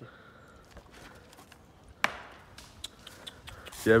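A quiet stretch broken by one sharp knock about two seconds in, followed by a few faint ticks; a man's voice starts near the end.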